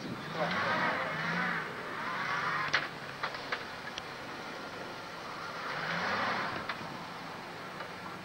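Classic Range Rover driving slowly through deep snow, its engine running with tyre and snow noise; the engine note swells about half a second in and again about six seconds in. A few sharp clicks come near three seconds in.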